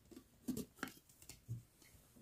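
Faint clicks and taps of a plastic tumbler being handled, several small knocks spread over the moment, with one duller knock about a second and a half in.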